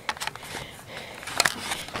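A few sharp, irregular knocks and clicks over a quiet background, the loudest about a second and a half in.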